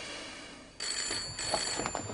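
Telephone bell ringing, starting about a second in.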